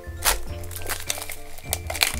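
Background music playing, with crinkling of clear plastic shrink wrap being peeled off a toy gumball capsule, sharpest about a quarter second in.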